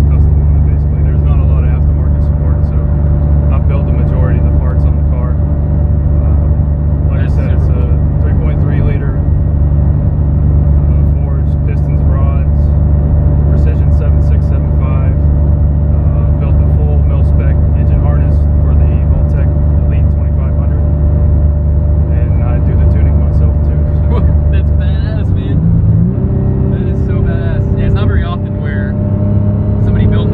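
Mitsubishi 3000GT VR-4's turbocharged V6, heard from inside the cabin, running at a steady speed. Its pitch steps to a new steady note about 25 seconds in, with talk over it.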